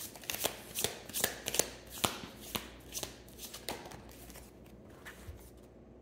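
A tarot deck being shuffled by hand: a run of quick card snaps and slides that thin out over the last two seconds.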